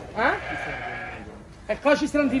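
A sheep bleats once. The call lasts about a second, rising in pitch at the start and then holding steady.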